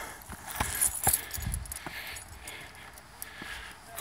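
Footsteps on the steel-grate walkway of a footbridge: a string of sharp, irregularly spaced metallic knocks as a hiker steps onto and along the grating.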